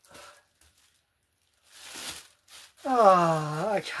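Mostly quiet, with a short soft rustle of plastic packaging being handled about two seconds in, then a man's drawn-out voiced 'okay' near the end.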